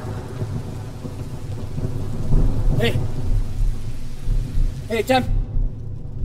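Heavy rain falling steadily, with a low, rolling rumble of thunder underneath.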